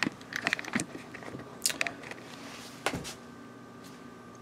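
Handling noise from a handheld camera being picked up and turned around: scattered clicks, knocks and brief rustles.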